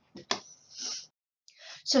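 A woman's breathing in a pause between sentences: soft breath and mouth noises, a moment of dead silence, then a quick inhale just before she speaks again.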